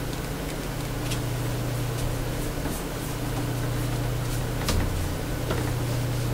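Steady low hum of room noise, with a few faint clicks and light sounds of a paintbrush working paint on the palette and canvas.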